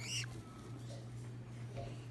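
A green-cheeked conure chick gives a brief high squeak right at the start, then little more than a steady low hum in the background.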